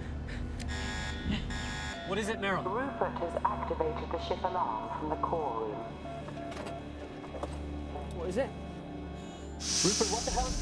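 A buzzing alarm sounds for about a second near the start over a steady low hum. A voice then cries out without words for a few seconds, and a loud burst of hissing comes near the end.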